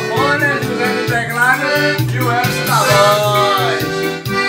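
Piano accordion playing a melody over keyboard backing with a steady bass rhythm, in an instrumental break of a romantic Brazilian song.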